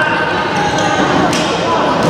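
Echoing sports-hall sound of a youth handball game: a raised voice calling out near the start, and a single sharp knock of the handball a little past halfway.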